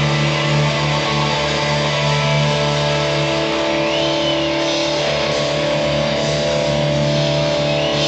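Live blues band music led by a single-cutaway electric guitar, with long held notes ringing over a steady, loud band sound.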